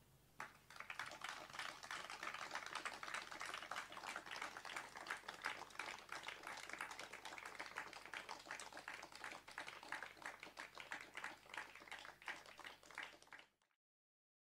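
Audience applauding, beginning about half a second in as a dense, even patter of claps that carries on steadily, then cut off near the end.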